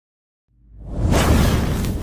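Silence for about half a second, then an intro whoosh sound effect with a deep low end swells up, peaks about a second in and slowly fades.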